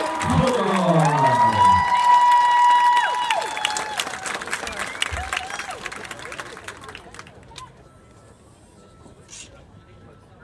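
Spectators cheering, whooping and clapping, with long held 'woo' calls over the applause. The cheering is loudest for the first three seconds, then dies away over the next few seconds.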